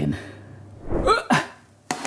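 A short non-word vocal sound from a man about a second in, with a soft low thud just before it. A sharp click comes near the end.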